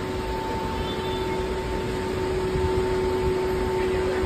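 Steady background hum of an airport terminal entrance: an even wash of noise with two constant tones running through it, and no distinct events.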